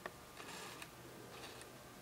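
Faint handling noise of hands working a stripped fiber-optic cable: one short click at the very start, then a few soft ticks and rustles over quiet room tone.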